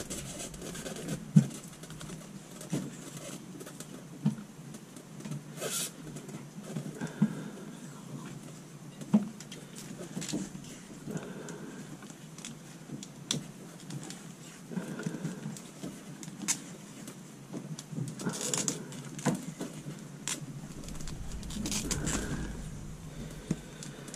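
Hands working overhead on a PVC condensate drain line and foam-insulated refrigerant line: scattered light clicks, taps and rustling, with a few soft breaths.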